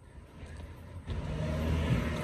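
Road traffic: a vehicle going by, its rumble and tyre noise swelling from about a second in.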